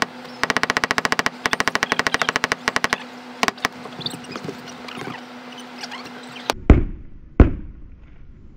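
Three rapid runs of mechanical clicking, about fourteen clicks a second, then two single clicks. Near the end come two loud, sharp hammer blows on a steel flat pry bar being driven under asphalt shingles.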